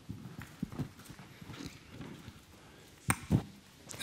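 A lull in a quiet room with faint scattered rustles, then two sharp knocks in quick succession about three seconds in.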